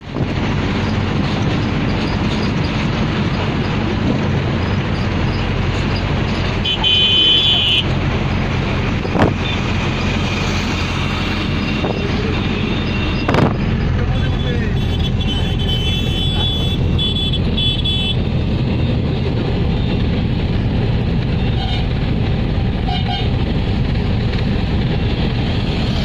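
Steady engine and road noise heard from inside a moving vehicle in traffic, with horns honking: a longer blast about seven seconds in and a run of short toots between about ten and eighteen seconds. Two sharp knocks stand out, about nine and thirteen seconds in.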